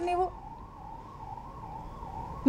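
A short word, then a faint, steady high tone that wavers slightly in pitch through the pause before speech resumes.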